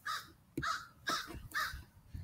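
Crows cawing, a run of short calls about two a second.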